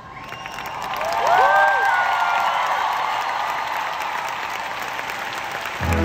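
Large arena crowd applauding and cheering, swelling over the first second or so, with a few shrill voices rising above it around a second and a half in. The band's music comes back in just before the end.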